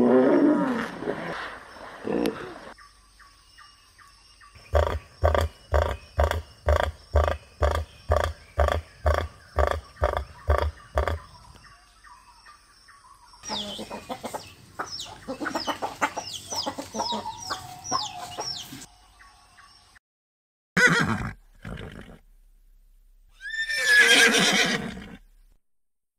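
A run of animal calls one after another: hippopotamus calls at the start, then about fourteen evenly spaced pulsing calls at roughly two a second. Chickens clucking and squawking follow, then two short sharp sounds, and near the end a horse whinnying.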